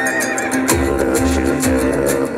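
Live band music: a deep, steady didgeridoo-like drone over a drum kit with regular cymbal strokes, and heavy low drum beats coming in under a second in.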